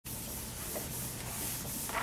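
Felt whiteboard eraser rubbing across a whiteboard, wiping off marker writing with a steady scrubbing hiss.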